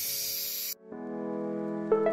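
Steady hiss of steam from an electric pressure cooker, cut off abruptly under a second in. Then background music with long sustained chords.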